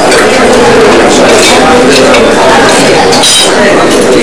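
Metal serving tongs clinking against stainless-steel chafing dishes and plates, several sharp clinks with a short ring, over indistinct chatter of voices.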